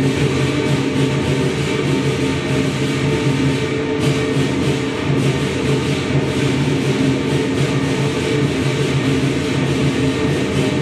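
Lion dance band playing continuously: drums, cymbals and gong, with a steady ringing tone underneath.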